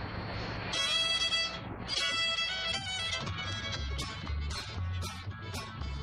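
A fiddle tune starting up: the fiddle opens with a long held bowed note under a second in, then plays the melody. From about four seconds, strummed acoustic guitars and a plucked upright bass join in a steady rhythm of about two strums a second.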